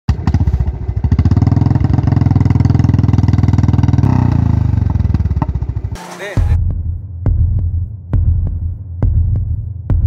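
Motorcycle engine running with a fast, even putter for about six seconds. A short whoosh follows, then music with a deep, throbbing beat takes over.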